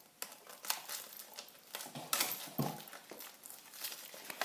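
Clear cellophane gift-basket wrap and plastic packaging crinkling and rustling as they are handled, in irregular bursts, loudest about two seconds in.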